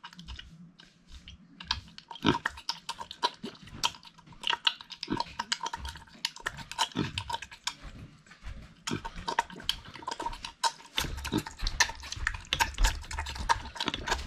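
Micro pig eating from a stainless steel bowl: a quick, irregular run of clicks and crunches as it takes up its food. Low thumping joins in the last few seconds.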